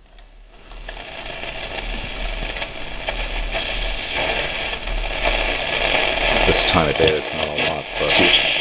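A 1938 Airline 62-1100 tube console radio being tuned on a shortwave band: static hiss that rises as the volume is turned up, with brief fragments of station voices coming through near the end.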